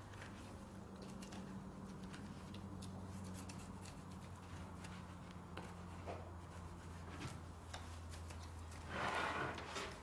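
Faint scrapes and small clicks of a boning knife cutting along beef rib bones, over a steady low hum, with a louder, brief rush of scraping noise about nine seconds in.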